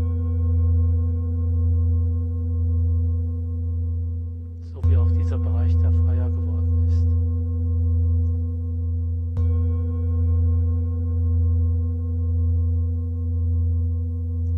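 A large Tibetan singing bowl resting on a person's body, struck with a felt mallet twice, about 5 and 9 seconds in, and already ringing from a strike just before; each strike rings on as a deep, long, pure tone with higher overtones and a slow pulsing waver. The therapist takes the prolonged, purer ring as the sign that the tissue under the bowl has relaxed.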